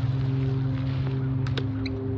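Hand pruning clippers snipping the side branches off a bamboo culm: a sharp snip at the start and two more in quick succession about a second and a half in, over a steady low hum.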